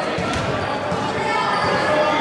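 A basketball bouncing a few times on a hardwood gym floor, over the chatter of players and spectators.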